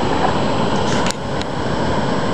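Steady rushing of river water pouring over a low dam's spillway, with a single sharp click a little after a second in.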